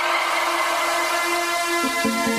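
Trance music in a breakdown: a noise sweep washes over one held synth note with no kick drum, and the bass and beat come back in at the very end.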